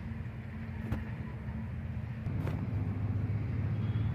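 Steady low rumble of road traffic that grows a little louder a little after halfway, with two faint clicks.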